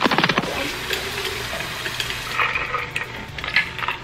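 Kitchen faucet running water into stainless-steel water bottles, a steady rush, with a few clinks of the bottles at the start.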